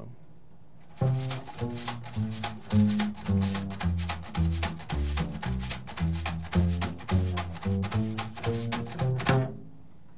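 Upright bass with a drum-head attachment: a line of walking bass notes on the strings with a wire brush striking and stirring the drum head fitted to the bass's body, giving a snare-like rhythm on top of the notes. The drum attachment stands in for a snare drum, an old country-music technique. It starts about a second in and stops shortly before the end.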